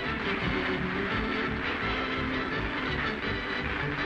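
The game show's theme music starts suddenly and plays on steadily at full level.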